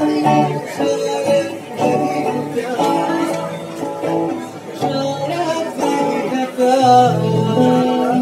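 Live acoustic guitar music, strummed and picked chords played through a PA, with a man's voice singing a melody over it in places.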